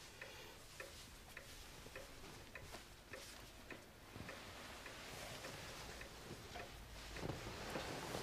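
Clock ticking steadily, about two ticks a second. From about halfway through, a rustle of bedclothes being tucked grows louder over the ticks.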